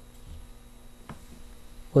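Quiet room tone with a faint, steady electrical hum, and a single faint tick about a second in; a man's voice starts right at the end.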